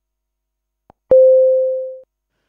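A single electronic tone sound effect about a second in: it starts sharply with a click and holds one steady pitch as it fades away over about a second, marking the animation's change of scene.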